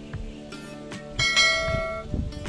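A bell-like chime strikes just over a second in and rings on, fading, over background music: the notification-bell sound effect of a subscribe-button animation.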